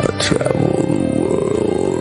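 A male rock singer's rough, growled wordless vocal, wavering up and down in pitch, over live music. Behind it a sustained string note and a low bass are held steady. It begins with a sharp accent.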